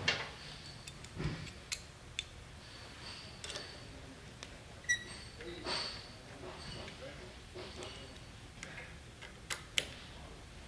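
Screwdriver driving the flathead screws that fasten a steel trip plate to a threading machine's die head: scattered light metallic clicks and clinks, some with a brief high ring, with a sharper click about five seconds in.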